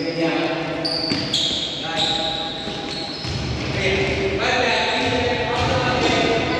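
A basketball dribbled on a gym floor, its bounces thudding from about halfway through, under raised voices calling out during play.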